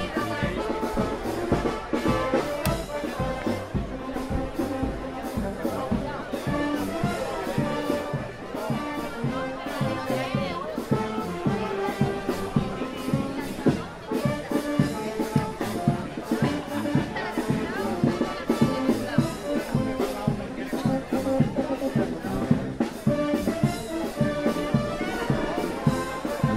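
A charanga, a Spanish street brass band of trumpets, trombones and a large bell horn with drums, playing a tune with a steady beat, with crowd chatter underneath.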